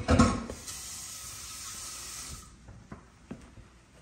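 A saucepan set down with a clunk, then tap water running into it for about two seconds and shut off suddenly. A few light knocks follow.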